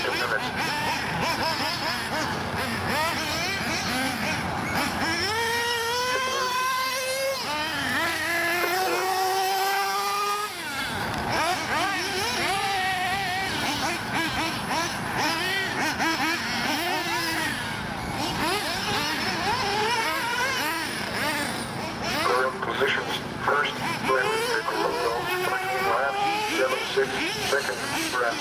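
Small nitro RC buggy engines running at high revs as the 1/8-scale buggies race. One engine rises in pitch as it accelerates, twice between about five and ten seconds in. Voices are heard in the background.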